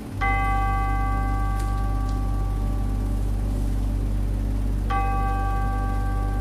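A bell-like chime struck twice, about five seconds apart, each note ringing out slowly, over a steady low hum.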